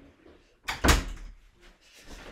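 A room door being pushed shut, with a single loud thump about a second in.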